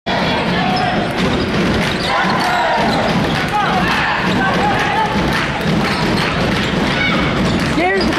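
Live basketball game in a gymnasium: a basketball being dribbled on the hardwood court, sneakers squeaking, and a constant murmur of crowd voices, with a cluster of sneaker squeaks near the end.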